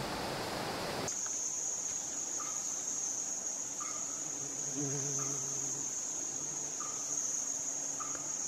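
A steady, high-pitched insect drone of rainforest insects that starts abruptly about a second in. Faint short chirps repeat every second or so beneath it.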